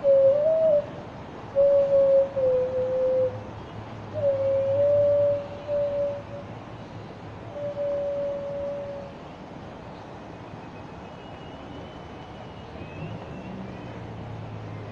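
Xun, a Chinese clay vessel flute, playing a slow melody in a pure, hollow tone: long held notes with slight bends in four short phrases, ending about nine seconds in. After that only a low steady background hum remains.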